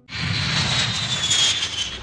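Four-engine jet airliner coming in to land: steady jet engine roar with a high whine that slowly falls in pitch.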